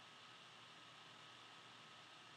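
Near silence: a faint steady hiss with a thin, faint high tone running under it.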